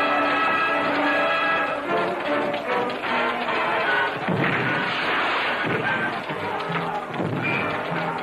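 Orchestral film score with held brass-like chords, joined from about four seconds in by several heavy thuds of battle sound effects.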